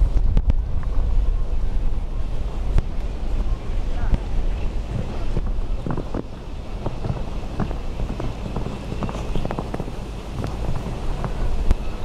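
Wind buffeting the camera's microphone in a constant low rumble, with faint distant voices over it.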